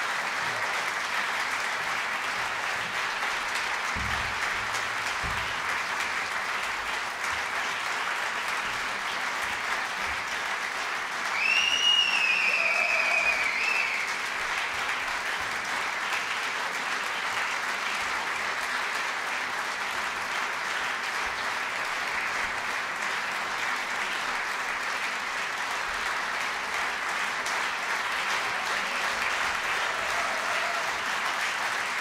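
Audience applauding steadily after a concert. About halfway through, a high whistle from the audience rises and then falls over two or three seconds, the loudest moment.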